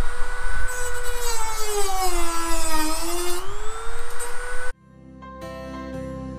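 A small handheld power tool running at high speed against the sheet-metal edge of a van door, its whine dipping in pitch and recovering as it is pressed into the metal. It cuts off suddenly about three-quarters of the way through, and soft guitar music follows.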